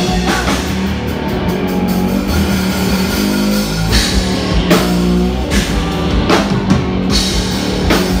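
Live rock band playing an instrumental passage on electric guitar and drum kit, loud and driving, with cymbal crashes about halfway through and again near the end.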